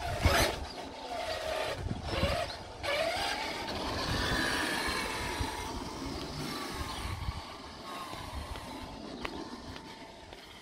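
Radio-controlled monster truck driving on a concrete driveway, its motor whining in pitch that rises and falls with the throttle over a rumble from the tyres. There is a sharp knock right at the start.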